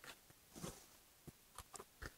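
Faint handling sounds: a soft brushing rustle and a few light ticks as a foam pre-filter pad is peeled up and lifted off the top of a fume extractor.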